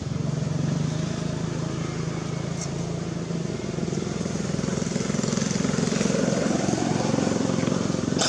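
A motor vehicle engine running steadily, a little louder in the second half.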